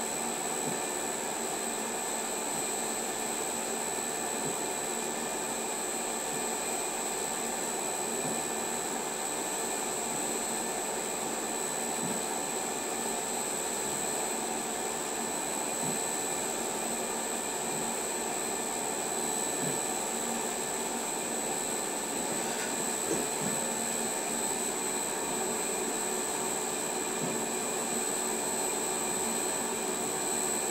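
A Mirror-o-Matic mirror-making machine running steadily, a constant motor hum with a faint high whine, as its overarm strokes a polishing tool over a 33 cm glass mirror on the turning table. Faint soft ticks come now and then.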